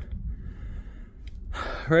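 A man's audible intake of breath about one and a half seconds in, over a steady low rumble on the microphone.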